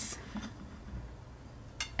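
Light clicks of a cut-glass lidded dish and its small footed riser being shifted on a tiled countertop: a sharp click at the start, a few faint taps, and another click near the end.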